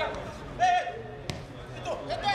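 Footballers shouting to each other across the pitch, with one sharp thump of a football being kicked a little past halfway through.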